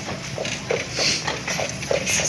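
A carriage horse's hooves clopping on the street at a steady walk, about three or four beats a second, with a short hiss about halfway through.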